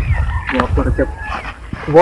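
Short, broken male cries and exclamations from two men grappling, a few of them gliding and whine-like, over a low wind rumble on the microphone.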